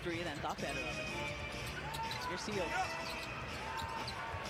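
Basketball being dribbled on an arena's hardwood court during NBA game play, over steady crowd noise, with faint broadcast commentary.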